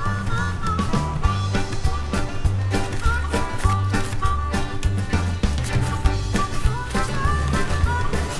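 Background music with a walking bass line, a steady drum beat and a melody on top.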